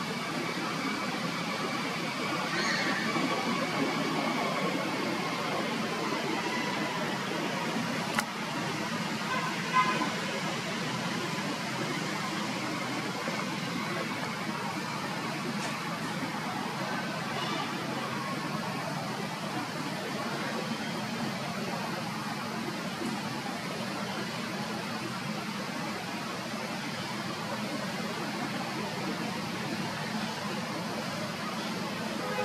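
Steady outdoor background noise with faint distant voices, broken by a sharp click about eight seconds in and a brief louder sound near ten seconds.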